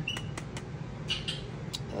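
Faint handling noises of a cardstock paper-craft gift box being turned in the hands: a brief high squeak near the start, then a few small clicks and a soft rustle.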